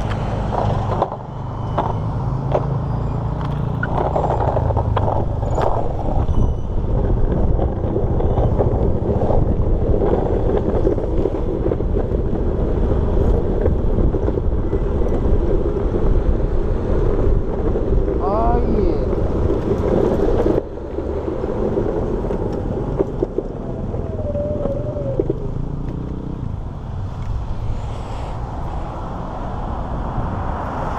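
Wind rushing over the camera microphone, with road noise, while riding along a street; the noise drops abruptly about twenty seconds in as the ride slows.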